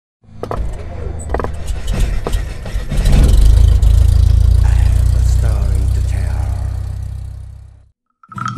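Intro logo sound effect: a few sharp clicks in the first two seconds, then a loud, deep, engine-like rumble that swells about three seconds in and fades away near the end.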